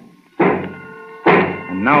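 Two heavy hammer blows, about a second apart, nailing down the lid of a wooden box. The first rings on briefly after the strike.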